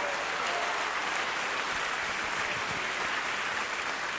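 A congregation applauding steadily, an even wash of clapping from many hands.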